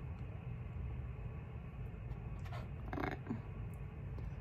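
Steady low room rumble with a faint soft rustle a little past halfway; a woman says 'all right' near the end.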